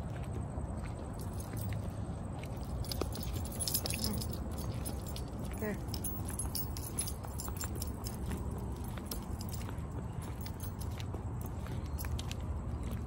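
A small bunch of keys jingling in a toddler's hand as he walks, in light scattered clinks throughout, over a steady low rumble.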